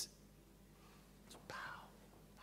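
Near silence: quiet room tone, with a faint click and a short, soft breath into the podium microphone about one and a half seconds in.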